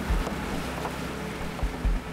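Motorboat under way: rushing water from the wake and wind buffeting the microphone, with a few low thumps of wind.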